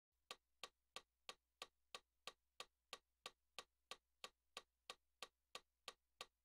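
A metronome ticking evenly at about three clicks a second, every click at the same strength, counting in before the keyboard playing.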